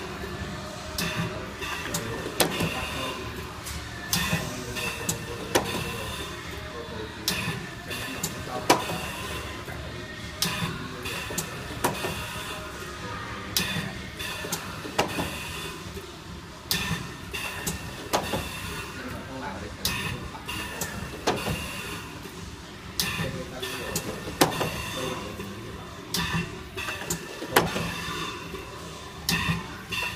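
Pneumatic four-colour pad printing machine running, its print heads and shuttle cylinders giving sharp, irregular clacks about once or twice a second over steady workshop machine noise.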